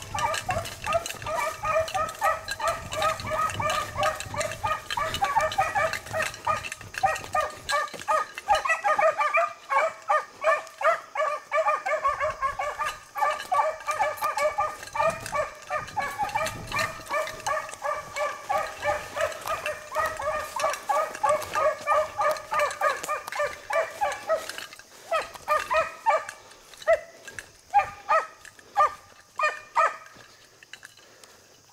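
Beagles baying while running a rabbit's scent trail, several hound voices overlapping in a continuous chorus. The chorus thins to scattered single bays over the last few seconds.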